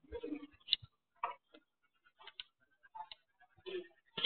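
Faint, irregular clicks and light knocks, about a dozen over four seconds, with short silences between them and no steady rhythm.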